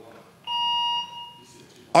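A single electronic beep: a steady pitched tone that starts about half a second in, holds for about half a second and then fades away.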